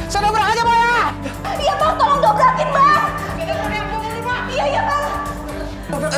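Several people shouting over one another, overlapping voices with no clear words, over background music with steady held low notes.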